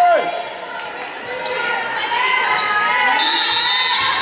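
Players and spectators calling out in a reverberant gymnasium, with a volleyball bouncing on the hardwood floor.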